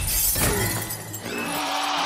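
Glass shattering: a shop's plate-glass window breaking, the loud crash at the start trailing off into scattering shards. Film score music plays underneath.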